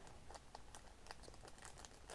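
Faint crinkling and small clicks of a pin's plastic packaging being handled in the hands.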